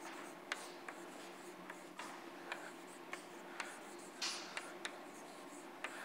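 Chalk writing on a blackboard: faint, irregular sharp taps and short scratches, with a longer scratch about four seconds in.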